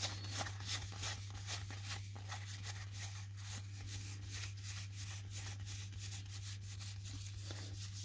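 Cardboard baseball cards being thumbed through by hand, one after another: a quick, irregular run of soft flicks and slides of card on card. A steady low hum sits underneath.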